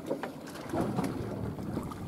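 Water sloshing and splashing at the side of a fishing boat as a hooked fish is brought up to the surface, with faint voices in the background.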